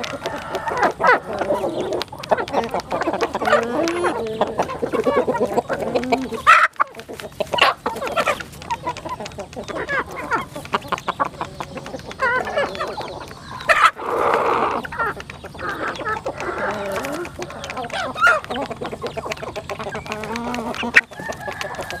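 A flock of chickens clucking continuously as they feed, with a rooster crowing among them. Many quick sharp taps of beaks pecking grain from a plastic trough.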